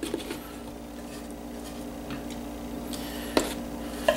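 Metal tongs handling cornmeal-coated fish fillets in a plastic shaker bowl, with faint clicks and one sharp click a little over three seconds in. A steady low hum runs underneath.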